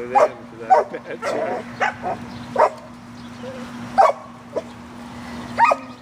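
German shepherd barking in short, irregular bursts, about eight of them, while straining on the leash at a protection-training helper.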